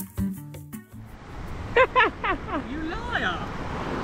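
Acoustic guitar music that cuts off about a second in, giving way to the steady wash of small waves at the shoreline, over which a person's voice cries out and laughs several times at the cold sea water.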